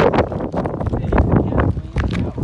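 Quick, irregular scuffing footsteps on wet, gritty pavement as someone runs, with wind buffeting the microphone.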